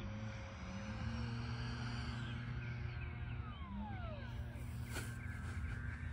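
Electric ducted fan of an RC foam jet whining, its pitch falling as it is throttled back to land.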